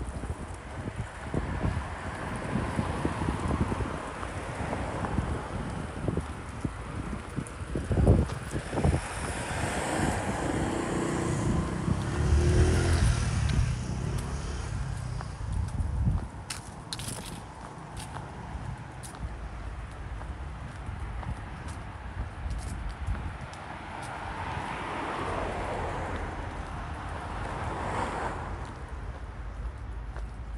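Outdoor street ambience with road traffic passing. The loudest moment is a vehicle going by around twelve to thirteen seconds in, with a thump about eight seconds in and wind on the microphone throughout.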